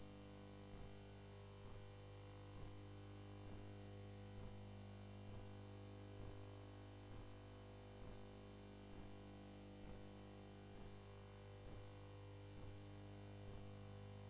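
Steady low electrical hum, with faint regular ticks about once a second.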